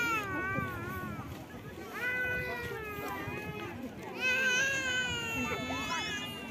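High-pitched voices calling out in long, drawn-out shouts: three calls of about a second and a half each, their pitch bending up and down.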